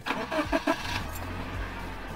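Car engine starting: a loud, uneven first second as it cranks and catches, then settling into a steady run.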